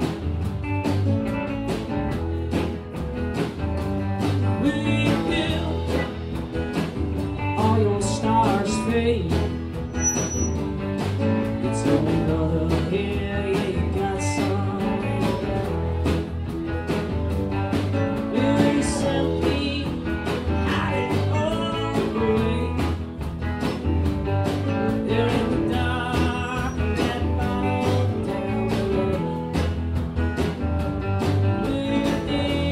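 Live band playing a country-blues rock song, with acoustic guitar, bass and drums keeping a steady beat.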